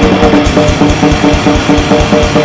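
Drum kit played hard and fast in a grindcore style: rapid bass drum strokes and snare hits under a steady cymbal wash. A distorted riff with short, changing held notes sits over the drums.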